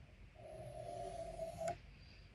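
A pencil drawn across paper in one long stroke lasting just over a second, with a faint steady pitched note and a light hiss, ending in a sharp tap.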